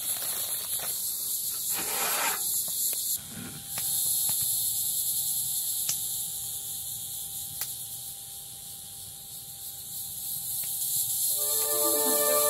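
Evening insect chorus, crickets chirring steadily at a high pitch, with a wood campfire giving occasional crackles and pops. Music with sustained tones comes in near the end.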